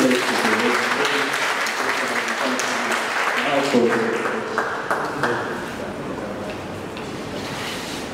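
Audience applauding, the clapping thinning out and dying away over the last few seconds.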